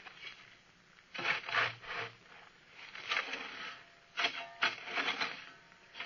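Sound effect of a spade scraping and shovelling earth, several strokes with short pauses between: the hole being filled in over the buried trousers. Heard on an old radio-drama recording with a faint steady whine.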